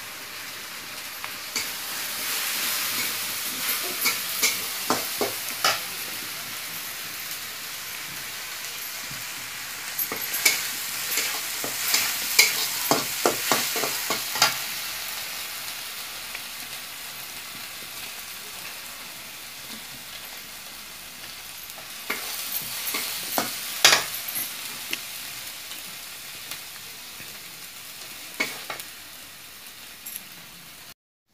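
Mushroom masala frying in oil in a metal kadhai, sizzling steadily, while a flat spatula scrapes and knocks against the pan in several spells of stirring.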